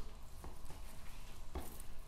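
Knife cutting through raw pork shoulder on a cutting board, quiet, with two faint knocks of the blade on the board, one about half a second in and one near the end.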